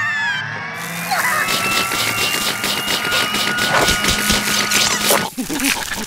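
Cartoon sound effect of a long, continuous slurp as a mouthful of noodles is sucked in, cutting off about five seconds in. A short vocal groan follows near the end.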